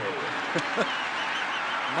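Stadium crowd noise, with a referee's whistle trilling briefly about a second in as the fumble recovery is ruled dead.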